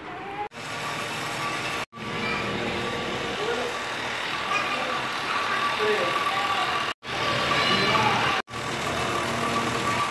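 Indistinct voices over a steady noisy background with a faint constant whine. The sound cuts out abruptly four times for a split second.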